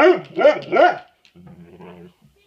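Chocolate Labrador retriever 'talking' back: a quick run of loud, short calls that each rise and fall in pitch in the first second, then a quieter low grumble. It is the insistent vocalizing of a dog asking to be let outside.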